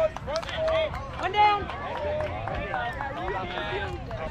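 Indistinct voices of several people talking and calling out at once, with one louder shout about one and a half seconds in.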